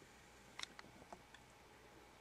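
Near silence: room tone with a few faint, separate clicks in the middle.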